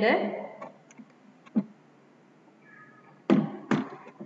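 Two sharp knocks about half a second apart near the end, louder than the voice, after a lighter single click a little earlier.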